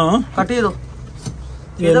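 Men's voices talking in short phrases, over a low steady rumble.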